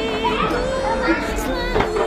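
Overlapping voices of adults and children chattering, with music underneath.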